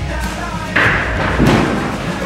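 Rock music track with two heavy thuds, one about three-quarters of a second in and a louder one about half a second later.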